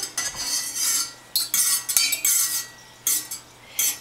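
A metal spoon stirring water in a stainless steel saucepan, scraping and clinking against the pot's sides and bottom in several short spells. It is mixing blue food colouring into the dye bath.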